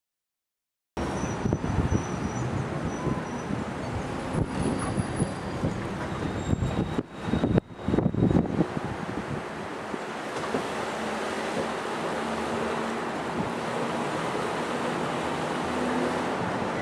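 Steady running noise of a slow-moving vehicle, with wind buffeting the microphone. It starts about a second in after a moment of silence, is broken briefly around the middle, and carries a faint steady engine hum in the second half.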